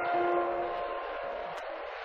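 F-104 Starfighter's General Electric J79 jet engine running at high power as the aircraft rolls past: a steady rushing noise with held whining tones, fading slowly as it moves away.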